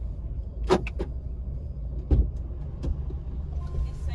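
Low rumble of a car cabin with the engine running, with a few sharp clicks and knocks and a heavier thud about two seconds in: a car door being opened and shut as a passenger gets in.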